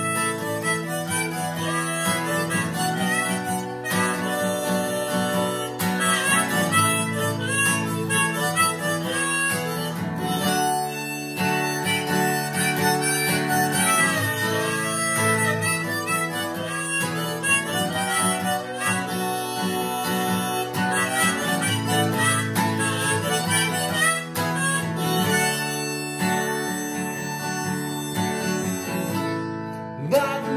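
Harmonica solo played in a neck rack over strummed acoustic guitar chords, the harmonica carrying the melody in long held and bending notes.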